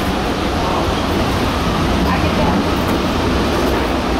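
Steady, even rumble and hiss of airport ramp and aircraft machinery at a parked airliner's open door and jet bridge, with faint voices.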